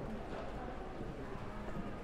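Indoor shopping-mall ambience: footsteps on a hard polished floor over a murmur of background voices.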